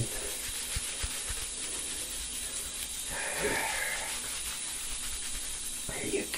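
Steady hiss, with a faint, soft sound about halfway through.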